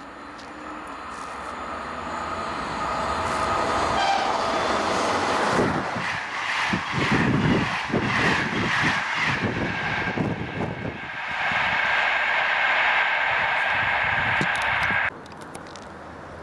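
NMBS M4 coach passenger train approaching and passing at high speed right beside the track. The sound swells as it nears, gives way to a rapid clatter of wheels over the rails for several seconds, then a steady high whine as the last cars go by. It cuts off abruptly near the end.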